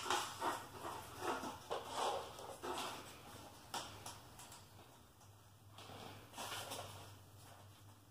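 Black plastic milk crates being handled and lifted off one another: a run of light knocks and rustles in the first few seconds, a single sharp click near the middle, then quieter handling.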